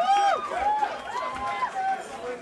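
Gig audience shouting and whooping between songs, several voices overlapping in long rising-and-falling calls.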